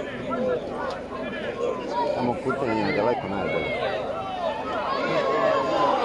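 Crowd of spectators talking and calling out over one another, many voices at once, growing a little louder toward the end.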